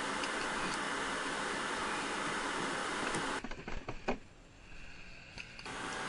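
Steady hiss of background noise with a few faint clicks. About three and a half seconds in it drops abruptly to much quieter for about two seconds, then the hiss comes back.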